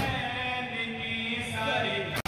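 Men chanting a noha, a Shia lament, through microphones, with a group of voices singing the verse together. Dull thumps of hands beating on chests (matam) sound under the chant.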